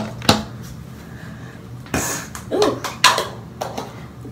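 An elastic hair tie popping off while hair is being pulled back, among a few sharp clicks and knocks, with a brief startled vocal sound.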